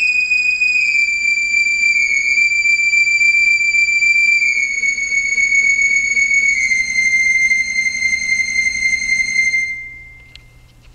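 Synthesizer voice from a MIDI player sounding sonified UV-B readings: one very high note, around D7, held and stepping slightly lower three times, then cutting off suddenly just before the end.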